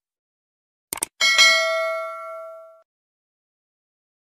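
End-screen subscribe-button sound effect: a quick double mouse click about a second in, then a bright notification bell ding that rings out and fades over about a second and a half.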